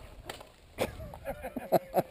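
A man's voice speaking and laughing close to the microphone, with several sharp knocks and clicks in the second half.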